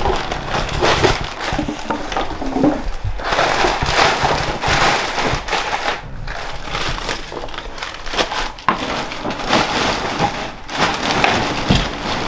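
Black plastic trash bag rustling and crinkling as loose garbage is packed into it and the bag is handled, with irregular crunching from the trash.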